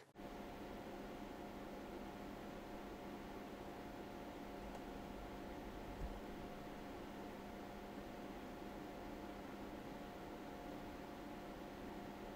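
Gaming PC under full load, its RTX 3080 Founders Edition graphics card fans locked at 70% for an overclock along with the rest of the system's cooling: a faint, steady fan hiss with a low, even hum.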